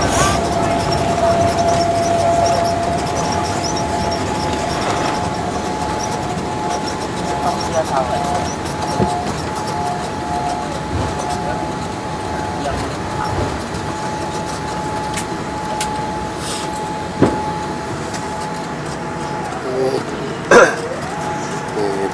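Jet airliner cabin noise on the landing rollout: the engines run with a steady whine over a loud rushing noise that eases off over the first several seconds as the aircraft slows on the runway. A sharp knock comes about 17 seconds in and another shortly before the end.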